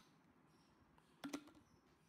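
Two quick plastic clicks a little past halfway, against near silence: the push-button latch of a travel mug's flip lid snapping open.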